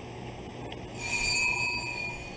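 Low room tone, then about halfway through a high-pitched squeal with several pitches, held for about a second and fading away.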